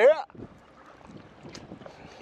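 A voice breaks off just after the start. After that there is only faint, steady background noise with light wind on the microphone.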